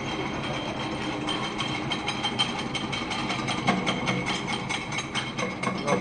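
Glass hammer crusher running and crushing glass: a steady machine whine under a dense, rapid clatter of clicks.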